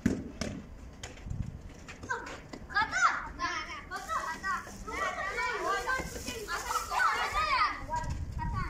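Children shouting and calling to each other during a street football game, high voices from about two seconds in, with a sharp thud at the very start.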